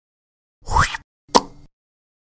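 Short logo sound effect: a quick rising swoosh, then a sharp hit that rings briefly about half a second later.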